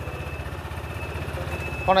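Small motorbike engine idling: a steady, evenly pulsing low putter, with a faint high whine over it. A man's voice comes in right at the end.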